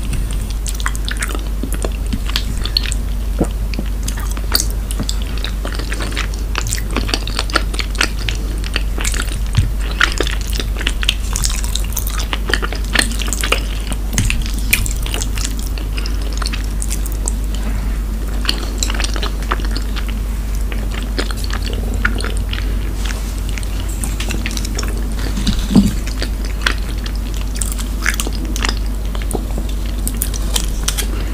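Close-miked chewing of soft, creamy shrimp gratin, with many small wet mouth clicks. Chopsticks tap against the glass dish now and then, the sharpest knock coming near the end. A steady low hum runs underneath.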